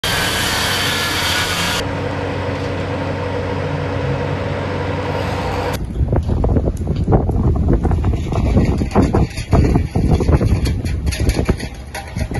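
Steady outdoor engine and traffic noise with a low hum. About six seconds in it gives way to uneven low buffeting and thumps over street noise, typical of wind and handling on a handheld microphone.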